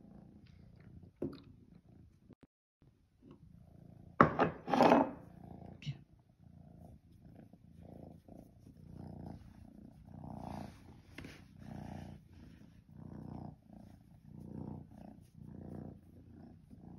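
Domestic tabby cat purring while being stroked, a low, even purr pulsing about once a second. A brief louder sound comes about four seconds in.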